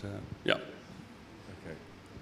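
A man's brief, hesitant "uh, yeah" into a podium microphone, followed about half a second in by a single short, sharp vocal sound like a catch of breath; otherwise quiet room tone.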